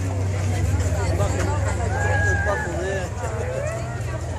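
A car engine running at low revs with a steady deep rumble, under crowd chatter.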